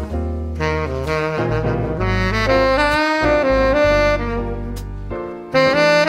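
Tenor saxophone playing a jazz melody of long held notes, one phrase bending in pitch, over an electronic backing with a low bass line. The sax drops out briefly just after five seconds in, then comes back loud.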